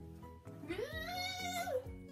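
A single long, high meow-like cry, rising in pitch, held, then dropping at the end, over steady background music.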